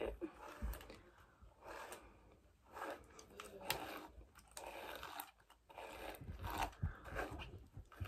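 A hairbrush dragged through long wet hair in repeated faint strokes at an uneven pace.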